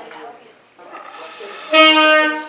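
Trumpet played by a beginner on a first try: after a quiet start, a single loud, steady note sounds about three-quarters of the way in.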